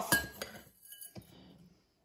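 A spoon clinking a few times against a glass bowl as bath salts are scooped out, two of the clinks ringing briefly, with faint scraping in between.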